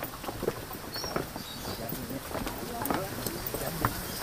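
Footsteps of several people walking over stone and concrete steps, irregular scuffs and taps, with indistinct voices of the group.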